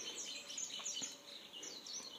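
Faint bird chirping: a run of short, high chirps that glide down in pitch, repeated through the moment.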